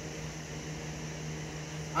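A steady low hum over a faint even hiss, with no distinct event.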